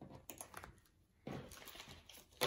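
Faint handling of a cash-envelope binder: a few light clicks, then a rustle about a second in.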